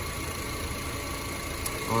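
A 2007 Honda Civic's 1.8-litre four-cylinder engine idling steadily under the open hood. It is running with an alternator that is not charging: the battery reads about 11.6 volts with the engine on.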